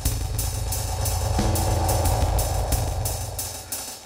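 DM1 drum machine playing a dub rhythm through a tape-style multi-tap delay, with the hits echoing in a steady run of ticks over a low bass. A held low tone comes in about a second and a half in, and the whole mix fades down near the end.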